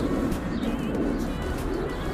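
Birds calling: repeated low cooing notes with a few short, higher chirps over a low rumble.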